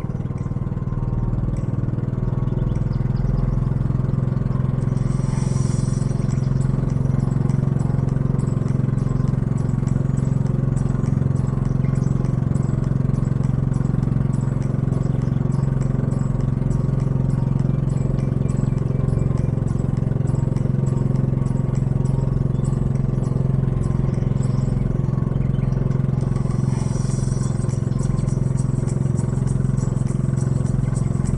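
Engine of a motorized outrigger boat (bangka) running steadily under way, heard from on board as a steady low hum, with a brief hiss about five seconds in and again near the end.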